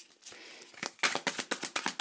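A tarot deck shuffled by hand: a quiet start, then from about a second in a rapid patter of card flicks and slaps, about ten a second.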